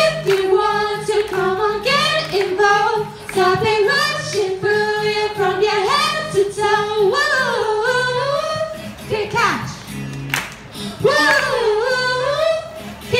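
A woman singing a pop melody into a microphone over a backing track with a steady bass line, played through a small portable speaker. The voice breaks off briefly about nine seconds in, then comes back.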